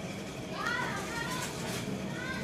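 Indistinct background voices in a shop, with a few faint rising and falling calls over a low steady hum.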